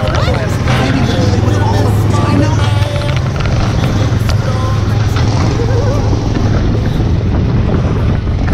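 Small gasoline engine of a Tomorrowland Speedway car running steadily under way, a constant low hum with road and wind noise over it.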